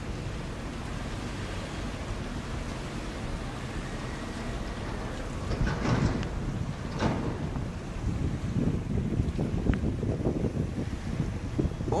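Wind rushing over the microphone with water noise underneath, growing gustier in the second half with two louder gusts about six and seven seconds in.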